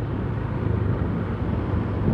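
Motorcycle engine running steadily while riding along a road, heard from the rider's own bike, with road noise.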